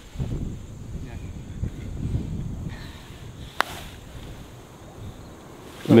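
Wind rumbling on the microphone, then, about three and a half seconds in, a single sharp click of a golf club striking the ball.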